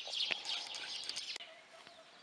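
Small birds chirping with rapid high twitters that thin out after the first second and a half, with a couple of faint ticks.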